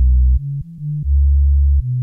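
Audiolatry Amurg Lite software synthesizer on its BS Electrick preset, playing a short run of low bass notes with one held note about a second in. Its low-pass filter is engaged, so the notes sound deep and dull, with the highs cut away.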